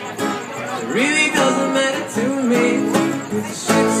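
Acoustic guitar strummed in a steady rhythm, with a man singing over it into a microphone.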